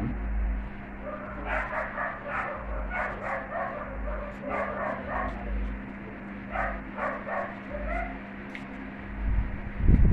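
A dog whining and yipping in short runs of high cries, several times through the middle, over a steady low electrical hum.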